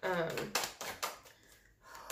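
Tarot cards being handled and shuffled in the hands: a quick run of crisp card clicks starting about half a second in and lasting under a second.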